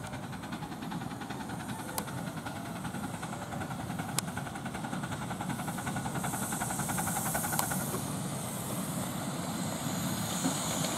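Miniature steam locomotive 'Silver Jubilee' drawing passenger carriages as it approaches and passes, with a rapid even beat, growing louder toward the pass. A steam hiss joins as it draws level, and there are a few sharp clicks.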